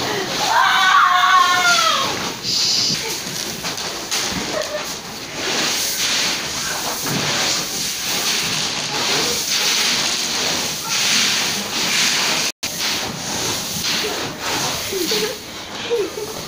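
Loose dried corn kernels shifting and rustling in a rough, uneven hiss as people wade and scramble through a bin full of corn. A voice calls out briefly near the start.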